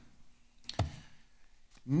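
Quiet room tone broken by a few faint clicks, the strongest a little before halfway; a voice starts just at the end.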